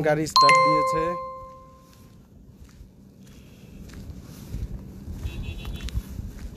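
A single bright electronic chime rings out and fades over about a second and a half, the loudest sound here. A low rumble, like a vehicle moving on the road, then builds toward the end.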